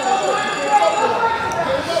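Indistinct voices of people in the stands and at mat-side talking and calling out, overlapping one another.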